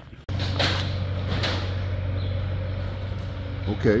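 Steady low machine hum in a large steel-framed building, starting abruptly a moment in. Two brief louder clatters come within the first second and a half.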